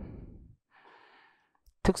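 A man's breath drawn in close to a handheld microphone, a soft rush of air lasting about a second in a pause between spoken phrases.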